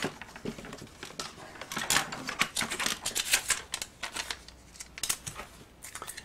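An irregular run of light clicks and scratchy rustles of paper and stamping supplies being handled on a worktable.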